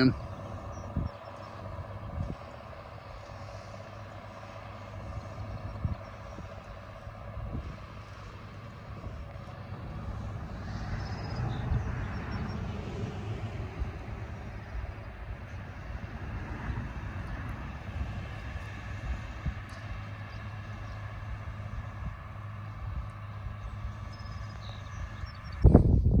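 Diesel farm tractors running steadily while subsoiling the field, a continuous engine drone that swells a little partway through.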